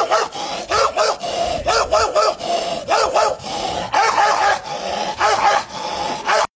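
A man beatboxing into his cupped hand: sharp mouth clicks and beats mixed with short pitched vocal yelps, repeated in a phrase about once a second.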